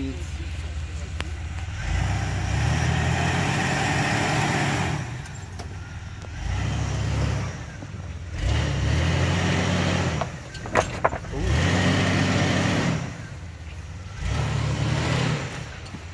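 Jeep Wrangler TJ engine revving in about five separate bursts as it crawls over rocks at low speed, the pitch rising and falling with each push of the throttle. Two sharp knocks come about two-thirds of the way through.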